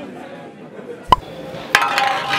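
A glass bottle clinking against a tabletop: one sharp knock with a short ring about a second in, then a second, ringing clink near the end.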